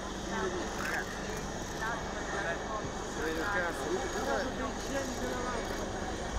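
Several people talking indistinctly over a steady low hum of engines.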